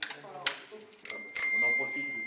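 Handlebar bicycle bell on a used bike rung twice in quick succession a little over a second in, its bright ring dying away over about a second, as the bike is checked over before being lent out.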